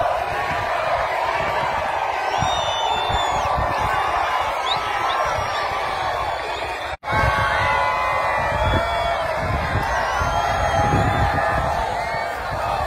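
Large crowd cheering and shouting, many voices overlapping at once. The sound cuts out for an instant about seven seconds in.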